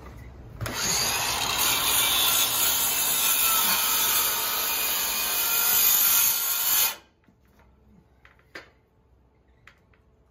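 Cordless circular saw cutting into OSB wall sheathing. It starts just under a second in, runs steadily for about six seconds and stops abruptly, followed by a few faint clicks.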